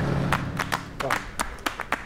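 Scattered hand claps from a small group, a handful of separate claps at uneven spacing, as a sombre music bed fades out.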